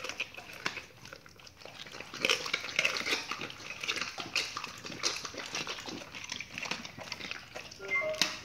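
Pit bulls chewing and biting raw duck quarters, with a run of irregular wet smacks and clicks.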